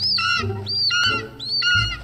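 Film sound effect of birds of prey screeching, the same cry repeated about four times, roughly twice a second, each rising then falling in pitch, over a steady low hum.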